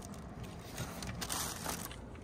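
Faint crinkling and scraping of plastic wrapping and a cardboard box being handled, a few short crackles scattered through.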